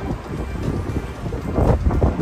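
Wind buffeting the phone's microphone, a gusty low rumble that swells near the end.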